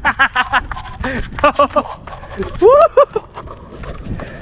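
Excited voices shouting and exclaiming in short bursts, the words unclear, with one loud rising-and-falling cry about three seconds in.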